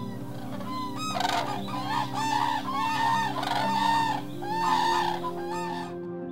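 A flock of common cranes (Grus grus) calling: many loud trumpeting calls overlapping, starting about a second in and stopping near the end, over soft background music with held notes.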